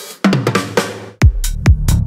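Dark progressive psytrance: a busy percussive passage, then about a second in the kick drum comes in at about two kicks a second over a rolling bass line, with hi-hats between the kicks.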